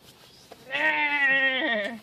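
A person making a silly, drawn-out wavering vocal cry that sounds like an animal call, held for about a second from roughly half a second in.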